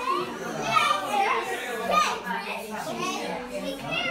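Several people talking and calling out over one another, children's voices among them, loudest about one and two seconds in.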